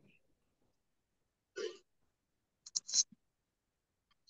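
Mostly silence, broken by a short faint vocal sound from a person about one and a half seconds in and a few brief hissing clicks just before three seconds.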